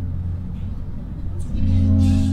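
A low rumble, then a sustained low drone from the film's music score that returns about one and a half seconds in.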